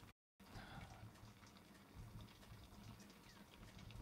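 Near silence: faint room tone with a few soft ticks, and a brief total dropout just after the start.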